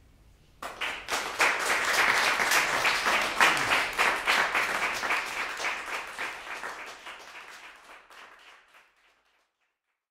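Audience applauding, starting suddenly just after the start and dying away over the last few seconds.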